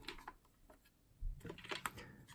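Faint clicks and small knocks from a Watson bulk film loader's door being opened by hand, starting a little over a second in.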